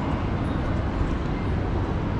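Steady outdoor city background noise, a low rumble with no distinct events.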